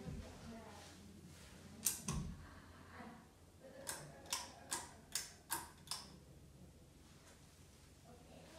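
Pull-chain switches on a Hunter Oakhurst ceiling fan clicking: a pair of clicks about two seconds in as the light chain is pulled. Then six clicks about half a second apart, from about four to six seconds in, as the fan-speed chain is pulled round to low speed.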